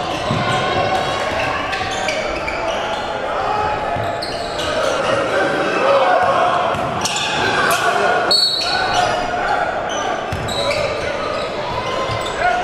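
Live basketball game sound in an echoing gym: the ball bouncing on the hardwood court amid crowd voices and shouts, with a brief break about eight seconds in.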